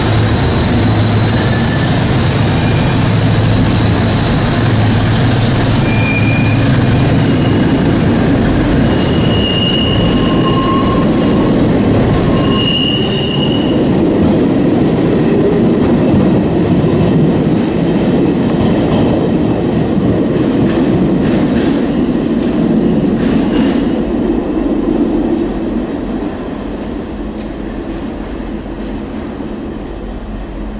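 A CP class 1400 diesel locomotive and its passenger coaches run past in a tunnel. The locomotive's engine hum carries through the first several seconds, then comes the rumble of wheels on rail with several short, high wheel squeals. The sound fades over the last few seconds as the train moves away.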